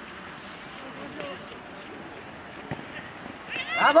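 Faint open-air background with distant, scattered voices, then loud shouting and cheering that breaks out just before the end as a goal goes in.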